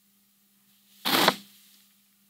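A man's single sharp sniff through the nose, about a second in, as he holds back tears. A faint steady hum runs underneath.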